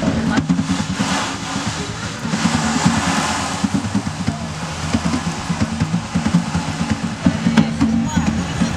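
Ocean drum being tilted so the beads inside roll across the drumhead, making swelling, wave-like swishes, with music underneath.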